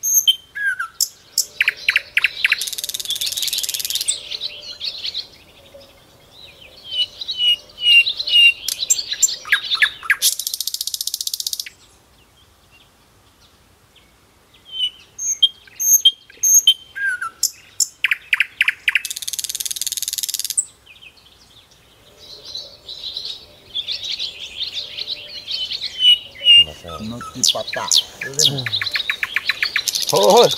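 Birds chirping and tweeting, with bursts of high insect buzzing that start and stop sharply; the same run of calls and buzzes comes round again about 14 seconds later. A man's voice is heard briefly near the end.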